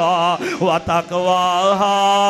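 A man chanting Quranic verse in Arabic in a melodic recitation style, amplified through a microphone. Quick wavering turns in the first second give way to a long held note with vibrato.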